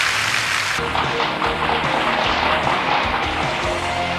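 Audience applause in a large hall. About a second in, the band's music for the song starts and plays on under the clapping.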